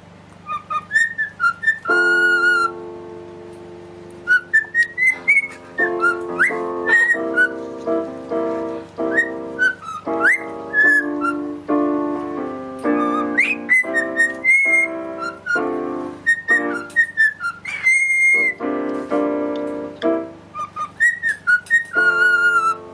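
A cockatiel whistling a tune in many short notes that slide up and down, along with a piano being played in chords and melody.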